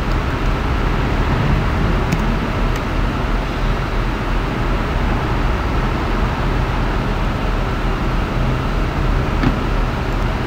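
Steady low rumbling background noise, like a running motor or traffic, with a few faint clicks.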